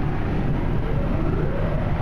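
Automatic car wash rinse water spraying onto the truck's windshield and body, heard from inside the cab as a steady wash with a low rumble of the wash machinery. A faint rising whine comes in about halfway through.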